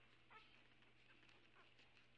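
Faint squeaks of newborn golden retriever puppies: one quick falling squeak about a third of a second in, then a few fainter chirps, over a low steady hum.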